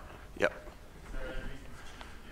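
Speech only: a man's brief 'yep' about half a second in, then a faint, distant voice over quiet room tone.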